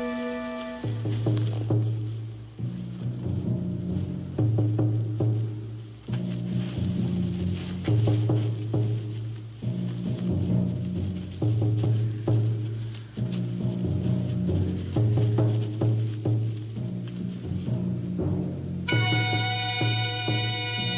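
Tense background score music: a low two-note figure with drum strokes, repeating about every three and a half seconds, and a high held chord coming in near the end.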